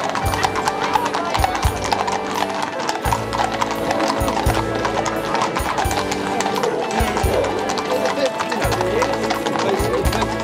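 Many horses' hooves clip-clopping at a walk on a paved street, with crowd chatter and music alongside.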